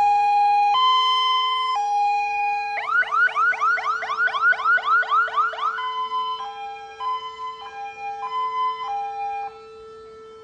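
Fire engine siren sounding a two-tone hi-lo pattern, switching about three seconds in to a fast rising yelp of about four sweeps a second, then back to a quieter two-tone that stops near the end. A steady lower tone runs underneath.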